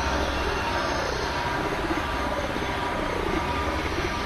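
Experimental electronic synthesizer drone music: a steady, dense noise wash over a constant low rumble, with faint wavering tones that slide up and down in the middle range.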